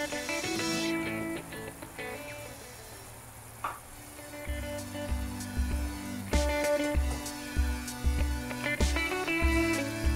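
Background music with sustained melodic tones; a steady bass beat, about two a second, comes in about halfway through.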